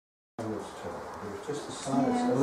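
A brief dead silence at an edit, then indistinct voices of people talking in a small room, growing louder near the end.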